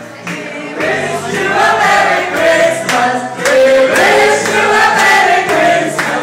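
Many voices singing loudly together with music, swelling about a second in.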